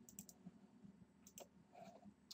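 Near silence with a few faint computer mouse clicks, a couple shortly after the start and one more past the middle.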